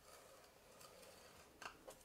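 Near silence, with the faint scrape of a scoring stylus drawn along a scoring-board groove through cardstock, and two faint short sounds near the end.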